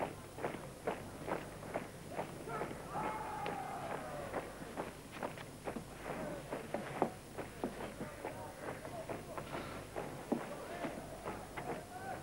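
Quick footfalls of several people running, with faint shouting voices in the background, as from a ball game being played some way off.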